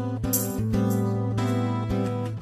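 Acoustic R&B music in an instrumental stretch: strummed acoustic guitar chords, struck a few times, over a sustained low note.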